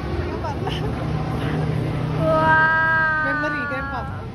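A high-pitched voice holds one long, slightly falling note for under two seconds, starting about halfway through, over a steady low hum.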